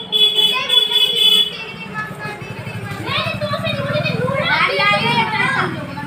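Boys' voices talking and calling out over one another. A steady high-pitched ring sounds for about the first second and a half.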